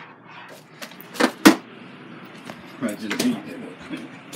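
A few sharp knocks, the loudest about a second and a half in, followed by a brief stretch of quiet speech.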